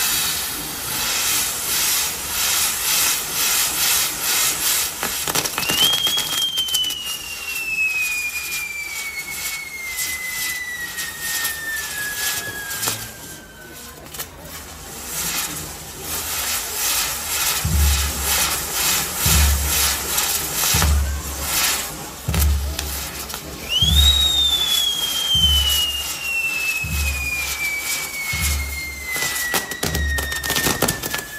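Castillo fireworks tower burning, with dense crackling and hissing from its set pieces. Two long whistles fall slowly in pitch, one starting about 6 s in and one about 24 s in. From about 18 s in, a low regular beat runs under it.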